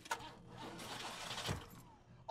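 Car engine sputtering and failing to start after the car has been hit in a crash. It is faint in the show's sound mix, swells briefly about a second and a half in, then dies away. The car is a red Pontiac Firebird.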